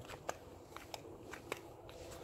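Faint footsteps on a concrete driveway: a few light, irregular scuffs and ticks over a low background.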